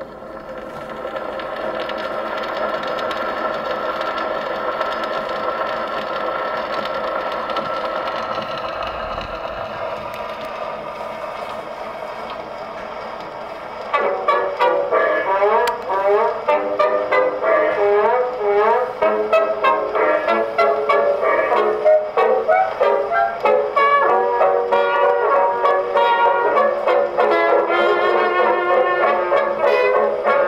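Acoustic-era dance band record played on an Edison Diamond Disc phonograph: long held notes swell in at the start, then about fourteen seconds in the brass-led band breaks into a bouncing dance tune.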